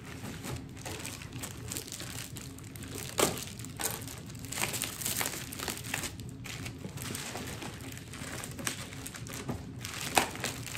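Packaging being worked open by hand: irregular crinkling and rustling with scattered sharp crackles, the loudest about three seconds in. The package is stuck fast and hard to open.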